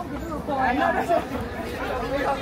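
Chatter of several people talking at once in a walking crowd, no single voice clear.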